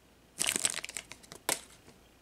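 Foil Pokémon booster-pack wrapper crinkling as it is handled, a run of crackles starting about half a second in, with one sharp crackle about a second and a half in.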